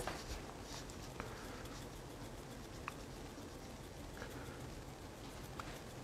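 Quiet room tone with a few faint, scattered light ticks and taps from handling a small glass seasoning jar.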